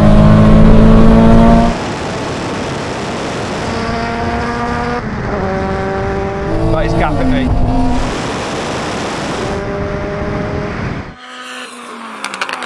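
Tuned cars accelerating at full throttle in a rolling drag race. First comes the Nissan Silvia S15's built 2.2-litre four-cylinder, very loud inside its cabin for about the first two seconds. Then engine notes climb in pitch through the gears, with a gear change about seven seconds in.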